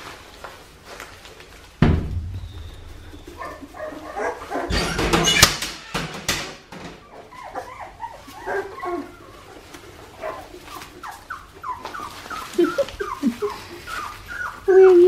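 Two-and-a-half-week-old Australian Shepherd puppies whimpering and yipping in many short, high cries that fall in pitch, coming thicker in the second half. A thump about two seconds in and a stretch of rustling around five seconds come before the cries.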